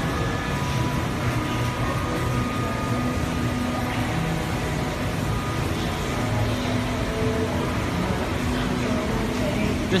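Steady background noise of a factory workroom: a low hum with a few faint steady tones and indistinct distant voices.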